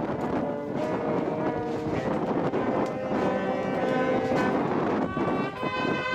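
Marching brass band playing held notes in a slow tune, with a drum beat about once a second.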